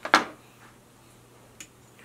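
Fly-tying scissors snipping the thread tag off at the hook: one loud sharp click just after the start, then a faint tick about a second and a half in, over quiet room tone.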